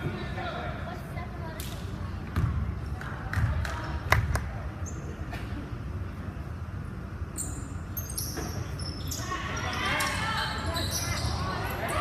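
Basketball bounced several times on a hardwood gym floor, sharp knocks ringing in a large hall, over a steady murmur of spectators. Voices from the crowd grow louder near the end.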